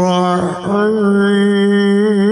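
A man's voice in slow, melodic Quranic recitation, holding long drawn-out notes, with a short break about half a second in before the note resumes.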